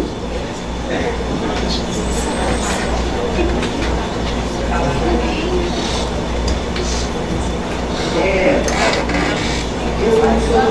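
Indistinct chatter of people in a large room over a steady low hum, with no clear words standing out.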